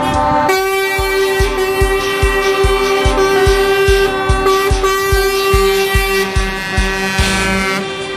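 Music with a steady thumping beat, about three beats a second, under long held chords.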